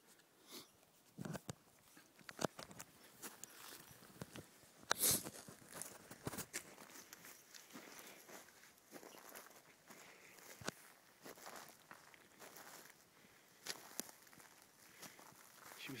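Footsteps of a person walking over a dry forest floor strewn with pine needles, twigs and dead branches: an irregular run of crunches and snaps, with one louder snap about five seconds in.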